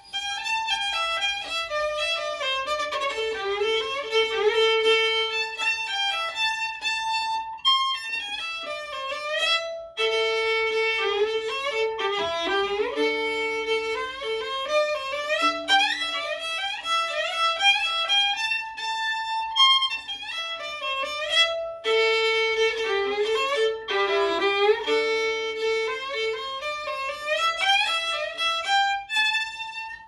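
Solo fiddle bowing a lively unnamed tune in repeated phrases, with brief pauses between phrases. The player judges the run-through not very clean.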